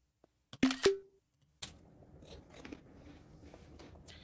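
Crunchy puffed snack being bitten and chewed close to a microphone: a few sharp crunches about half a second in, then softer scattered crunching over a faint hiss from about a second and a half.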